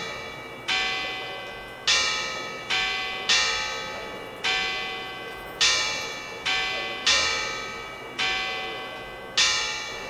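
Church bells ringing before a service. Several bells of different pitches are struck in turn about once a second, each stroke ringing on and fading into the next.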